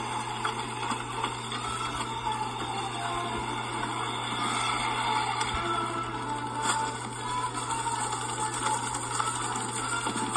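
Animated-film soundtrack played through laptop speakers: background music mixed with small sound effects, over a steady low hum.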